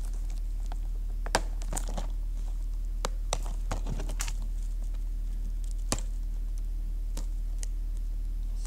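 Scattered light clicks and taps from handling plastic DVD packaging, the sharpest about a second and a half in and another near six seconds, over a steady low electrical hum.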